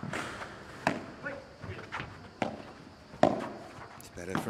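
Padel rally: the ball being struck by paddles and bouncing off the court, a series of sharp knocks about half a second to a second apart, the loudest just after three seconds in.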